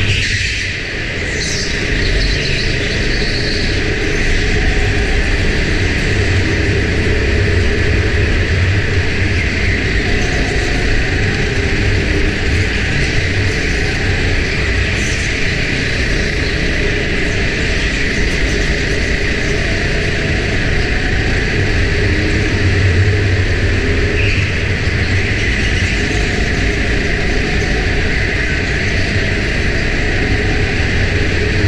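Go-kart engine running under throttle with a steady rumble, heard from a camera mounted on the kart; the level dips briefly about a second in.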